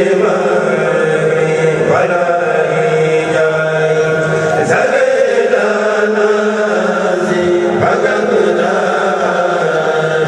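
A group of men chanting a Mouride khassida in unison, amplified through microphones, the voices holding long notes.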